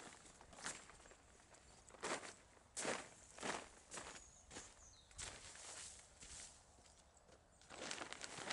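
A person's footsteps on stony ground and plastic harvest netting: a string of irregular steps, thinning out after about six seconds.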